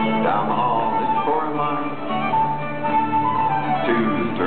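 Live folk dance band playing a tune, with a fiddle carrying the melody over plucked strings.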